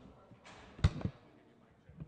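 Microphone handling noise: a brief rustle, then a sharp knock about a second in, with a smaller knock right after, as a microphone is bumped while being set in the podium's cluster of microphones.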